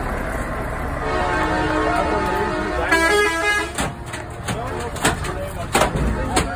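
Truck air horn blowing for nearly three seconds, its note turning louder and higher about halfway through, over the rumble of passing truck engines.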